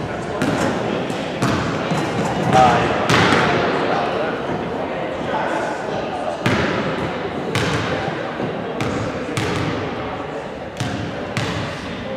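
Basketball bouncing on a hardwood gym floor, about a dozen sharp bounces at uneven spacing, often in pairs about half a second apart, each echoing in the hall.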